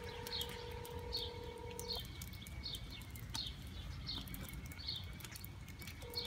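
A phone's ringback tone plays from the handset, stopping about two seconds in and starting again at the very end, while a small bird chirps over and over, a short falling chirp a little more often than once a second, over a low background rumble.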